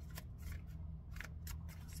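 A deck of oracle cards being thumbed through in the hands, giving a few separate crisp snaps as the cards slide against each other, over a steady low hum.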